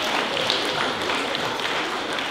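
Audience applauding, the clapping slowly thinning and fading toward the end.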